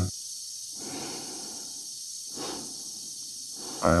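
An astronaut breathing heavily inside a closed spacesuit helmet, with two breaths swelling over a steady hiss.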